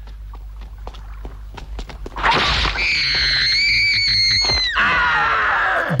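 Horror-film soundtrack: a low, steady rumbling drone with faint knocks, then a woman's high-pitched scream starting about two seconds in. The scream is held at a nearly steady pitch for about two and a half seconds and cuts off sharply.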